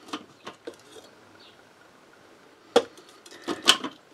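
A few sharp plastic clicks and knocks from a food processor's bowl and lid being handled, with quiet between them. The loudest click comes about three seconds in and two more follow just before the end.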